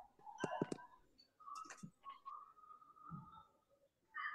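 Several sharp clicks and knocks in the first two seconds, over faint, muffled voices.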